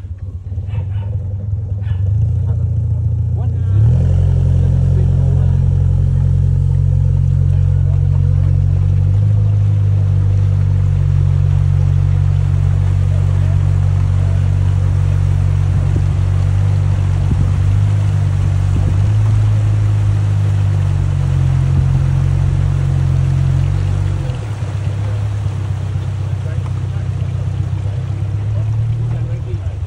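A small river boat's motor speeds up about three seconds in, then runs steadily under way with a low drone. It eases off a few seconds before the end.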